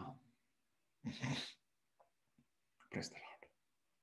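A man breathing out heavily twice, breathy and whispery, about a second in and again about three seconds in.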